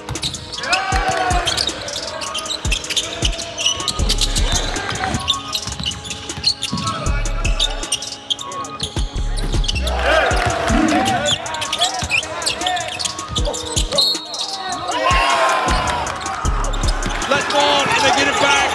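Basketball bouncing on a hardwood court during live play, with repeated sharp ball strikes, voices calling on court, and background music with a recurring deep bass note.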